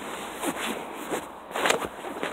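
Soft rustling and a few light knocks of a phone being handled and moved about, with clothing brushing against it.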